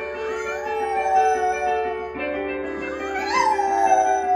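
French bulldog howling along to chords played on an electronic keyboard. There are two drawn-out, wavering howls: the first swells and fades within the first two seconds, and the second rises and falls near the end.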